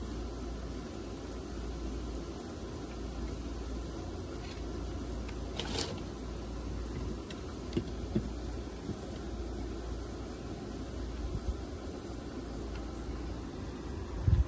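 Steady outdoor background noise with a low hum, and a few faint clicks about six and eight seconds in as a car alternator is handled.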